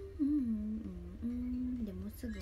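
A young woman humming with her mouth closed: a few notes that start higher, step down and hold steady pitches.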